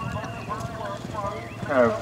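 Horse's hooves cantering on a sand arena surface, a dull irregular thudding of hoofbeats. A loudspeaker announcer's voice starts up near the end.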